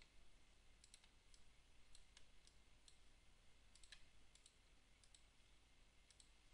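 Faint computer mouse clicks, scattered and often in quick pairs, over near silence.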